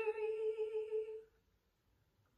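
A woman's voice holding one sung note with vibrato, which stops about a second and a quarter in.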